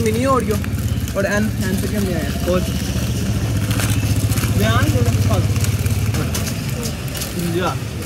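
Motorcycle engine idling close by: a steady low throb that grows stronger toward the middle and fades near the end, with street chatter over it.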